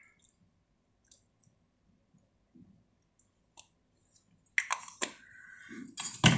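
A few faint, scattered small clicks, then from about four and a half seconds in a much louder run of rustling and knocks from the recording phone being handled close to its microphone.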